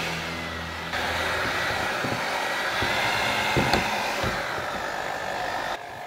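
Signora electric hand mixer running with spiral dough hooks kneading stiff bread dough in a wooden bowl; its motor hum steps up louder about a second in, with a few sharp knocks in the middle, and drops just before the end.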